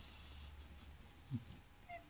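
Sleeping cocker spaniel puppy giving one short whimper about a second in, with a fainter high squeak near the end.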